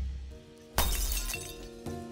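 A music sting fades out, then a little under a second in a glass-shattering sound effect crashes in. A ringing tone lingers after it and dies away.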